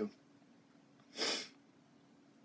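A single short, sharp breath drawn in through the nose by the narrator, about a second in, in an otherwise near-silent pause.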